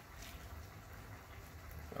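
Wooden spoon stirring cooked rice in a stainless steel pot: faint soft rustling with a couple of light scrapes, over a low steady hum.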